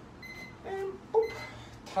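Electronic round timer giving short, high beeps about a second apart, marking the end of a workout round, with short vocal sounds from a man between the beeps.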